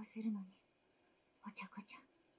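Quiet speech from the subtitled anime episode: a woman's voice talking in Japanese, one short phrase at the start and another near the end, with a pause between.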